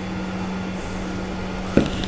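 Steady low mechanical hum of a running machine or fan, with one light knock near the end as a plastic part is set down on the workbench.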